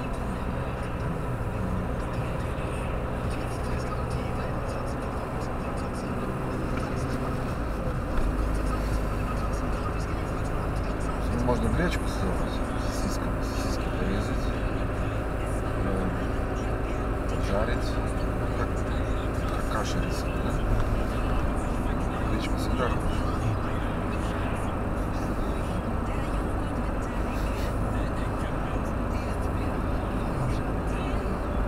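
Steady road and engine drone inside a moving car's cabin, a low rumble that grows stronger about a quarter of the way in and then holds.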